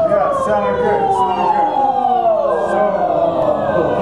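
Singers' voices sliding down in pitch together in a vocal siren exercise, coached to keep the tone forward 'in the mask' all the way down.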